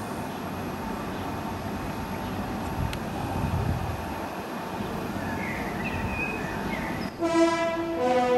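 A steady rushing outdoor background noise, then a music cue with bowed strings coming in about seven seconds in.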